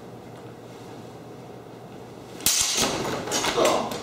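About two and a half seconds in, a sudden heavy impact followed by quick knocks and about a second of clattering and scuffling: a fencer in padded protective gear crashing to the floor during a longsword exchange.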